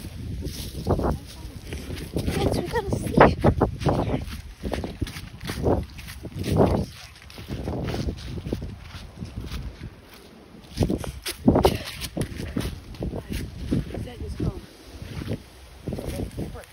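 Irregular rustling and crunching of footsteps through dry leaves and grass, with wind buffeting the phone's microphone and indistinct voices.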